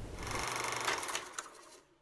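A small machine running with a fast, even rattling whir that fades out near the end.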